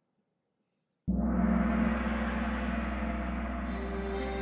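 Playback of a rough draft of a channel logo song, composed and arranged in Logic Pro, starting suddenly about a second in with a sustained opening chord over a deep bass note.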